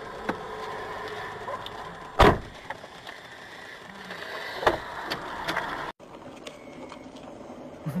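Cabin sound of a moving car from an in-car camera: steady road and engine noise, with a heavy thump about two seconds in and a lighter knock near five seconds. The sound cuts off abruptly near six seconds and quieter noise follows.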